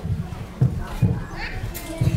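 Microphone handling noise: a series of dull bumps and knocks as microphones on stands are adjusted, with murmuring voices in the hall.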